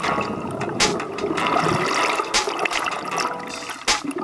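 Churning, bubbling water from a scuba diver's entry into the sea, heard from below the surface, with a few sharp clicks or knocks among the bubbles.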